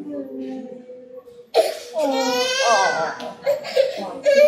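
Toddler crying, breaking into a loud, high-pitched wail about halfway through.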